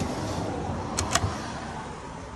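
Two quick sharp clicks about a second in, a cupboard's push-button latch being released as the door is pulled open, over a steady low rumble.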